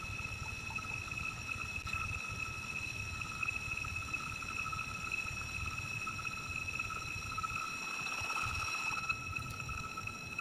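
On-car brake lathe spinning a brake rotor and taking a final shallow resurfacing cut, a steady whine over a low rumble.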